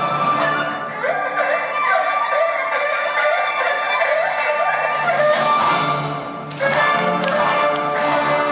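Chinese ensemble music led by erhu and violin playing fast melodic runs over plucked guzheng and pipa. The sound thins out briefly, then the full ensemble comes back in loudly about six and a half seconds in.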